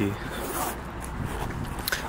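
A jacket zip being pulled, with the jacket's fabric rustling.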